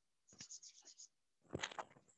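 Chalk scratching on a blackboard in a quick run of short strokes. About a second and a half in comes a brief, louder knock and rub as a board eraser meets the blackboard.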